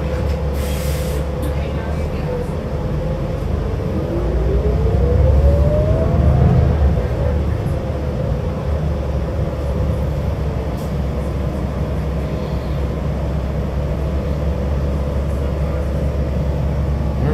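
Cabin sound of a New Flyer Xcelsior XD60 articulated diesel bus under way: a steady low drivetrain rumble, with a short hiss about half a second in. From about four seconds a whine climbs in pitch and the rumble grows louder for a few seconds as the bus picks up speed, then settles back.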